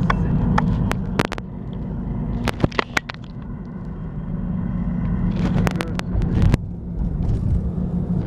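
Car driving, heard from inside the cabin: a steady low rumble of engine and road noise, with several sharp clicks and knocks scattered through it.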